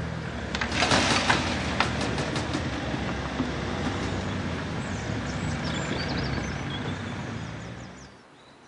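Road cars driving across a railway level crossing, with the steady running of their engines and tyres and a quick cluster of sharp clacks about a second in. The sound fades away near the end.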